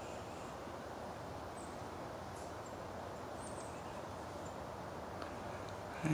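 Steady outdoor background noise of the woods, with a few faint, high, short bird chirps in the middle.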